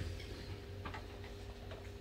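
Quiet room tone: a faint steady hum with a few faint ticks.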